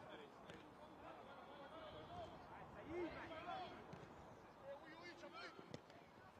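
Faint pitch-side ambience of a football match: distant voices of players calling out on the pitch, scattered and quiet.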